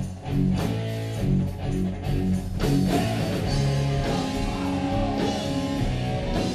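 Live rock band playing, electric guitar chords to the fore over drums.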